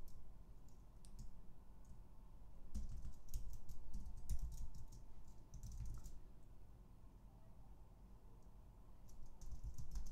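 Typing on a computer keyboard in short bursts of key clicks, with a lull of a couple of seconds before a last burst near the end.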